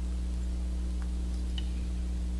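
Steady low electrical hum, with two faint snips of small scissors trimming the rubber legs on a fly, about a second in and again half a second later.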